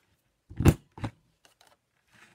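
Handheld corner rounder punch pressed down on a cardstock panel, cutting a corner: two sharp clacks about a third of a second apart, the second fainter.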